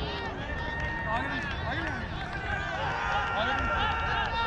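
Players' voices calling out across an open cricket ground, heard through a wicketkeeper's helmet-mounted camera, over a steady low rumble of wind and movement on the camera.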